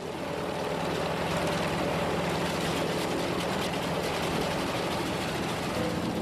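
Propeller aircraft engine drone in flight, steady and dense. It swells in at the start and fades away near the end.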